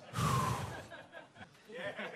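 A man's breathy, exhaled "yeah" close to a microphone, lasting about half a second. It is followed by a lull, and faint voices start near the end.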